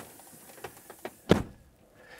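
A few light clicks and knocks, then a single dull thump about a second and a quarter in: a lorry cab door being pulled shut.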